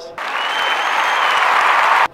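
Crowd applause added in as a sound effect, starting suddenly just after the start and cutting off abruptly about two seconds later.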